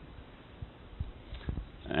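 A pause in speech: faint background noise with a few soft, short ticks.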